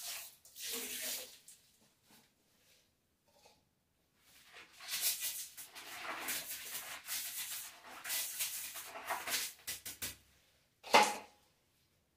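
Soapy water poured from a plastic tub into a toilet bowl, then several seconds of brisk scrubbing inside the porcelain bowl. One loud, short knock comes about a second before the end.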